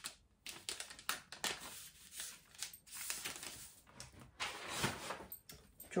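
Pattern paper being folded and creased by hand along a dart line: irregular rustling and crinkling of paper in short bursts.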